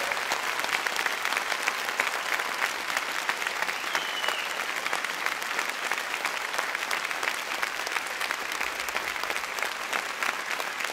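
Audience applauding steadily: dense, even clapping from many hands.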